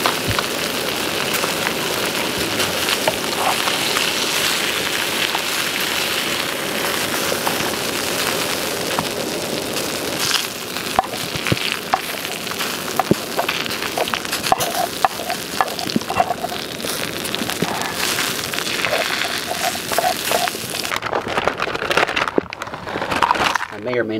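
Crusted trout sizzling in a frying pan with a steady hiss. About halfway through, a metal spatula and fork click and scrape against the pan as the fish is slid onto a plate.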